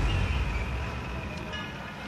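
Deep, low rumble of a blast dying away, fading steadily over the two seconds, like the tail of a building's demolition implosion.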